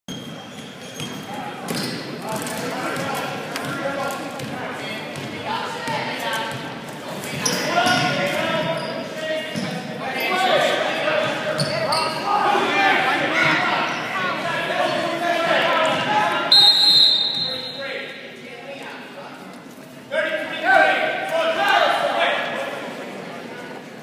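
A basketball bouncing and players moving on a hardwood gym floor, with spectators' shouts echoing through the hall. A referee's whistle blows once, about sixteen seconds in.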